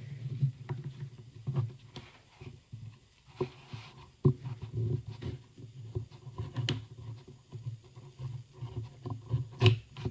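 A metal palette knife sliding and scraping along the hot-glued edge of a watercolour paper pad, cutting the top sheet free, with irregular soft knocks and a few sharp clicks.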